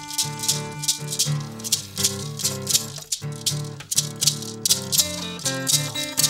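Acoustic blues played live: a hand shaker keeps a steady beat of about three strokes a second over strummed acoustic guitar chords, with a harmonica holding one note in the first second.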